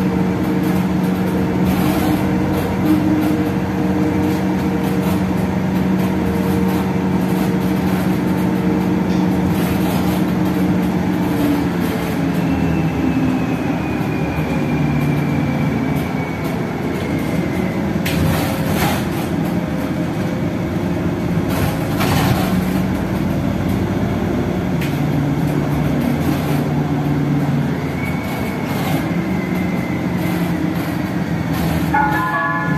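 Inside a moving city bus: the steady drone of the engine and drivetrain with road noise. A high whine falls slowly in pitch about twelve seconds in and again near the end, and a couple of knocks or rattles come through the body.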